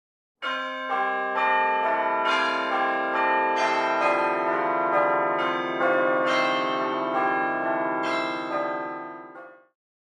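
Bells ringing a sequence of notes, a new strike about twice a second, each ringing on under the next, fading out shortly before the end.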